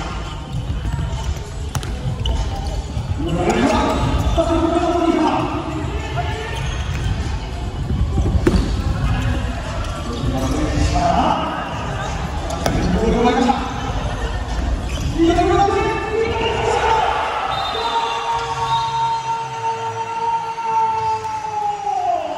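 A futsal ball being kicked and bouncing on a hardwood court, echoing in a sports hall, with players' voices. In the last several seconds one long drawn-out shout is held and then falls away as a goal is scored.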